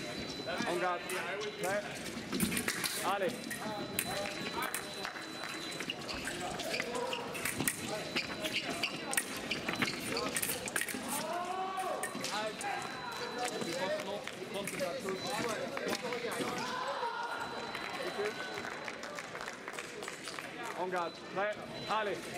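Men's foil bout: repeated sharp thumps and clicks from the fencers' feet stamping on the piste and their blades meeting, over a steady background of many voices in a large hall.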